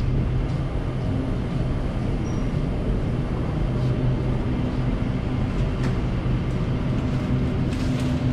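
Steady low electrical hum and rumble of supermarket refrigerated display cases and store ventilation in a freezer aisle.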